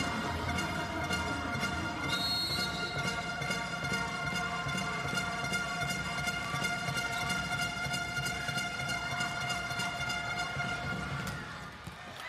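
Arena fans' din of plastic trumpets blowing steady held notes over a beating bass drum and crowd noise. A short high whistle sounds about two seconds in, and the din fades near the end.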